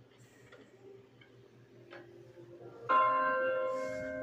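A large church bell, playing from a television, strikes once about three seconds in and rings on with a rich mix of steady tones. Before the strike there is only faint, low sound.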